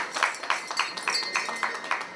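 Brass hand bell rung in quick repeated strokes, about five a second, each leaving a bright ring: the ceremonial bell rung on a commodities exchange floor to open trading in a newly listed contract.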